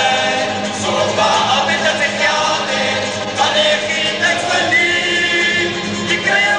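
Cape Malay male choir singing a comic song (moppie), a lead singer at the microphone over the choir's full voices, with a string band of guitars and mandolins behind them.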